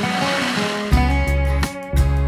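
Running water from a small artificial rock waterfall and stream, with a short laugh at the start. Guitar background music comes in about a second in.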